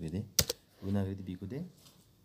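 Two sharp keyboard clicks in quick succession about half a second in, a key press that starts a new line of text, with a voice talking around them.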